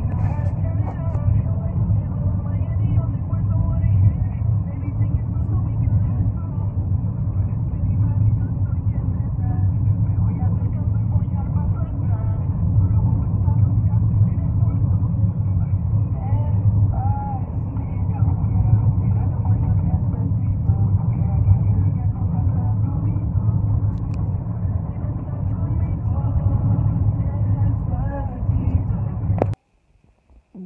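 Steady low rumble of a car driving, heard from inside the cabin; it cuts off suddenly near the end.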